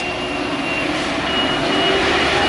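Steady vehicle engine hum at a bus loop, with a high-pitched electronic beep that sounds on and then repeats in short pulses through the second half.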